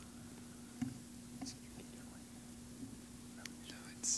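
Faint whispering from a few people conferring quietly, with occasional soft hissy consonants, over a steady low hum.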